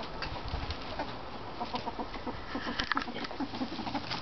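Ferret dooking: quick runs of soft, clucking chuckles, the sound an excited ferret makes at play. Some rustling near the end.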